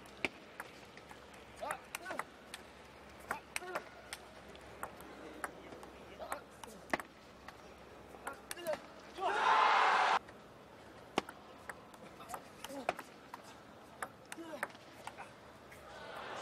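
Table tennis ball clicking sharply and irregularly off the bats and table during rallies, over low arena noise. A loud burst of voice about nine seconds in, as a point ends.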